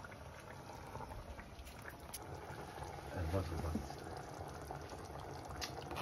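Tomato meat sauce simmering in a pot, a faint steady bubbling, with passata poured into it from a carton near the start.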